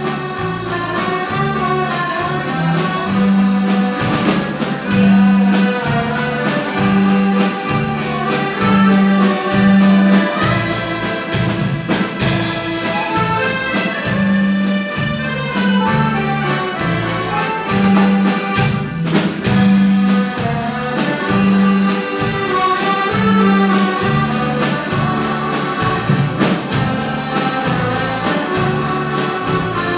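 Accordion orchestra playing a popular light-music tune live: many accordions sounding melody and chords together over a bouncing bass line, about two notes a second, with a drum kit keeping the beat.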